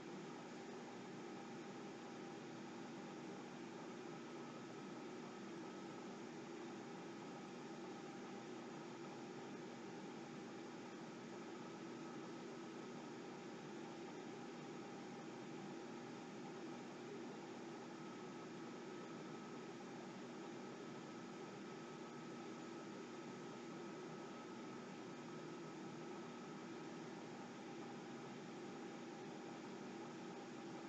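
Faint, steady hiss of room tone with a light constant hum, and no distinct sound events.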